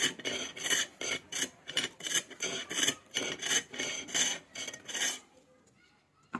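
Chisel cutting a spinning wooden masher handle on a bow lathe: rhythmic scraping strokes, about three a second, as the bow drives the wood back and forth. The scraping stops about five seconds in.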